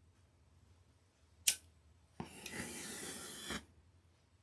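A lighter clicks once, then, about a second later, a hissing rush lasting about a second and a half as the flash paper held in tongs is lit and flares away.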